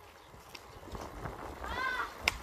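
A motorcycle moving slowly at low revs, its engine a faint, uneven low rumble. Near the end a child gives a short rising call.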